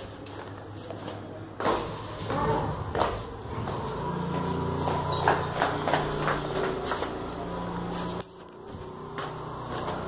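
Footsteps and knocks of a hand-carried camera on the move, with a steady low hum from about four seconds in that cuts off suddenly a little after eight seconds.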